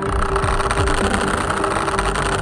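Outro sound effect for an end card: a dense, steady rushing sound with a held tone, starting suddenly at the cut.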